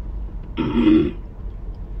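A woman clears her throat once, a short, rough burst lasting about half a second, set off by the spicy kilishi she is eating.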